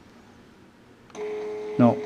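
A second of quiet, then about a second in the Quick Scan 1000 analyzer's built-in receipt printer starts running with a steady whine, printing out the progesterone result.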